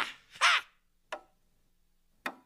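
Two short, harsh, caw-like cries in quick succession, the second rising and falling in pitch, then a single sharp click about a second in.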